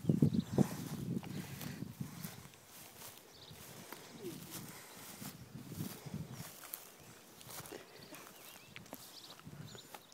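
Footsteps through dry pasture grass and a phone camera being handled: a loud rustle and bump in the first second, then faint, irregular rustling.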